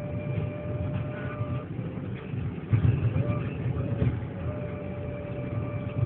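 Road and engine rumble inside a moving car's cabin, swelling briefly about three seconds in. A thin, held pitched tone with a few small steps in pitch runs over the rumble.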